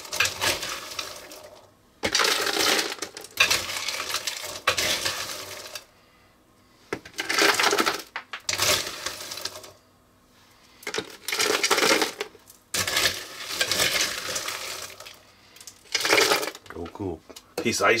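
Salt and ice cubes spooned into an ice cream maker's bucket, clattering and rattling in repeated scoop-by-scoop bursts of a second or two with short pauses between.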